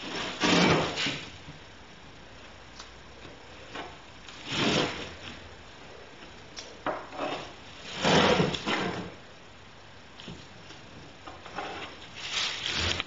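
A metal straightedge sliding and scraping across a plywood sheet, three times, each scrape under a second long, with a few light taps between.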